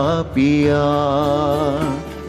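A man singing a slow Jain devotional hymn (sajjhay) in an ornamented melodic style. He slides down in pitch, then holds one long, slightly wavering note that softens near the end.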